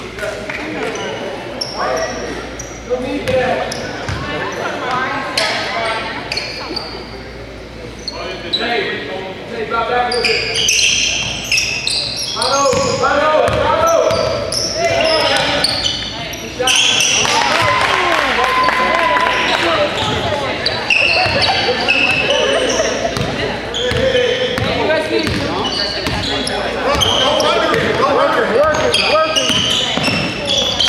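Basketball game sounds in a gym: a basketball bouncing on the hardwood floor, sneakers squeaking, and players and spectators calling out indistinctly, all echoing in the hall. It gets louder about halfway through as play picks up.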